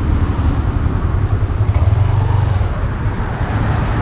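Motor scooter engine running close by, a steady low rumble, with road traffic in the background.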